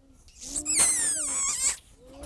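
Young children making high, squeaky, wavering noises over a low hum, imitating the buzzing of a bee's kiss. It lasts about a second and a half.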